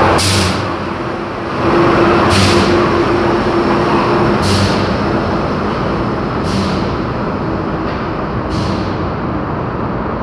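Metro train pulling out of the station and running off into the tunnel, its running noise slowly fading. A short hiss recurs about every two seconds, weaker each time, and a steady whine is held for a couple of seconds near the start.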